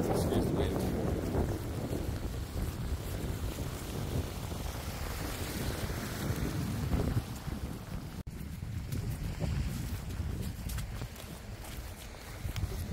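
Wind buffeting the microphone: a steady low rumble under a rushing hiss, broken by a momentary cutout about eight seconds in.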